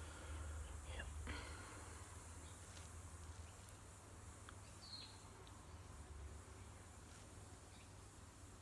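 Near silence: a low steady room hum, with soft breathy noises about a second in and one short high chirp about five seconds in.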